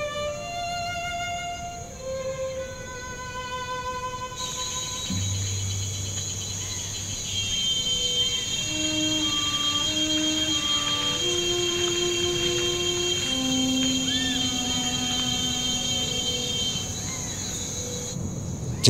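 Slow film-score music of bowed strings holding long single notes one after another, with a brief low note about a third of the way in. A high steady tone sounds above them through most of the second half.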